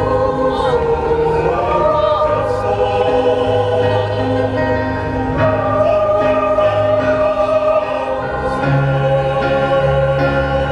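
Mixed choir of men's and women's voices singing together in harmony, holding long, slowly moving notes.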